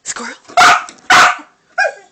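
Small dog barking twice, loud and sharp, about half a second apart, with a shorter yip just before and another near the end. The dog is excitedly answering its owner's cue word "squirrel".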